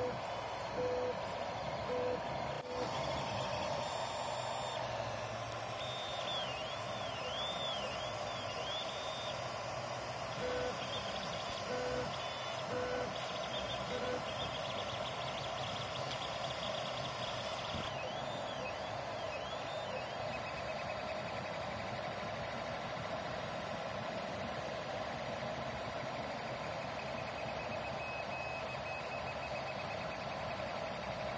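FDM 3D printer printing. Its stepper motors give short, evenly spaced tones and quick rising-and-falling whines as the print head moves back and forth, over the steady whoosh of the hotend cooling fan.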